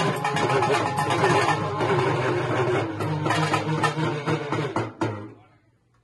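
Urumi melam drum ensemble playing a fast, dense rhythm of drums struck with sticks, under a wavering pitched tone. The playing stops abruptly about five seconds in.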